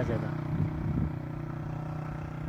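A steady low mechanical hum, with a few faint voice sounds in the first second.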